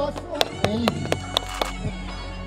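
Music over loudspeakers, with several sharp percussive hits and voices underneath.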